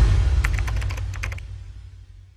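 A quick run of computer-keyboard typing clicks over a low rumble. The clicks stop about one and a half seconds in, and the rumble fades away toward the end.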